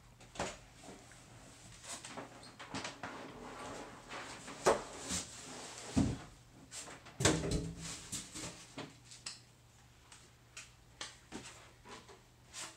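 Irregular knocks, clicks and rustling from a large flat-screen TV and its cardboard and plastic packaging being handled, with a few louder knocks in the middle and a quieter stretch near the end.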